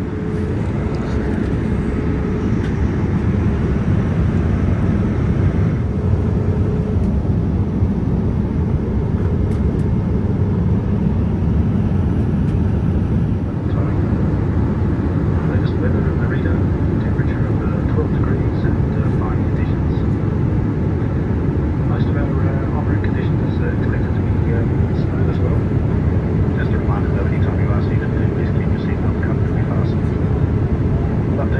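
Steady cabin noise of a Boeing 787-9 airliner in cruise: an even, low rush of airflow and engine noise.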